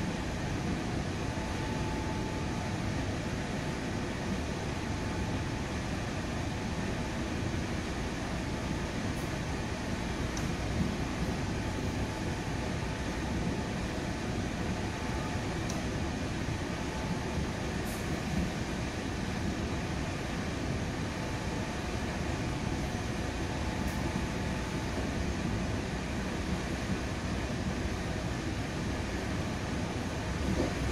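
Steady interior noise of a commuter train running at speed, heard from inside a passenger coach: an even, low rumble of wheels on the track with a constant hiss.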